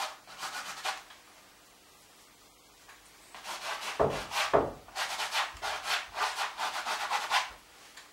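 Paint being scrubbed onto a stretched canvas in quick, scratchy strokes, about four a second, in two runs with a pause between. A couple of dull thumps of the canvas come about four seconds in.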